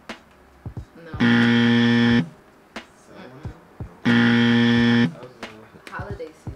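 Game-show style buzzer sound effect sounding twice, each a flat, steady buzz about a second long, the two about three seconds apart. A few light clicks and taps fall between them.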